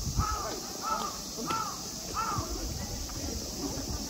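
A crow cawing four times in a row, one caw about every two-thirds of a second, with a steady high hiss in the background.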